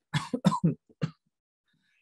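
A person coughing four or five times in quick succession in the first second, then stopping.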